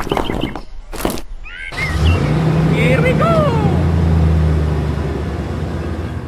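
Small model bricks clattering as they are tipped onto a pile. About two seconds in, a steady low engine-like drone begins, with a few short squeaky gliding tones over it.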